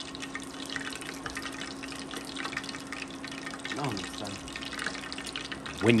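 Battered whitefish fillets deep-frying in hot oil in a cast iron fryer: a steady sizzle of many small crackles as the moisture boils out of the fish. A steady low hum runs underneath.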